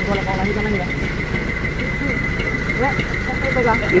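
Men's voices chatting over a truck's diesel engine idling steadily, with a steady high-pitched tone running along.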